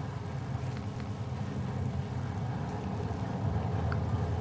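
Steady low background rumble with no speech, the kind of outdoor hum that distant traffic makes.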